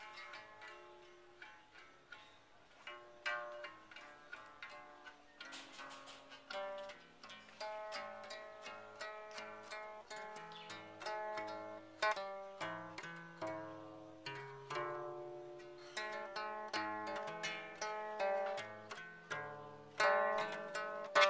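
Inanga, a Rwandan trough zither, plucked with the fingers: a continuous, fairly regular run of ringing notes, often several strings at once, each note dying away.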